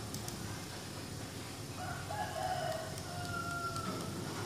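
A single long animal call with a steady pitch, starting about two seconds in and lasting about two seconds, over a few faint laptop keyboard clicks.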